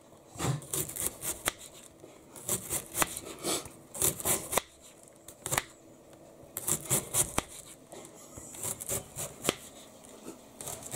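Kitchen knife finely shredding a crisp white cabbage on the worktop: runs of quick crunchy slicing cuts in short bursts with brief pauses between them.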